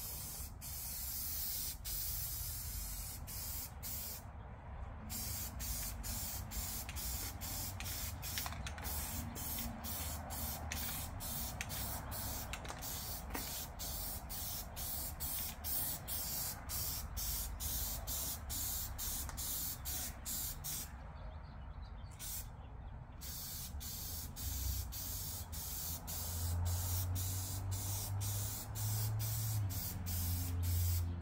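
Aerosol spray can of Rust-Oleum primer hissing in long continuous passes. There is a brief pause about four seconds in and a longer two-second pause about two-thirds of the way through, where the nozzle is let go.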